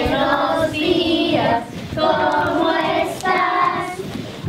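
A group of young children singing together in short phrases about a second long, with brief breaks between them and a woman's voice among them.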